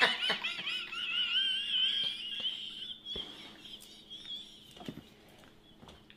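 A person's high-pitched, wavering squeal of laughter that fades out over about three seconds. A few faint knocks follow, over a faint steady hum.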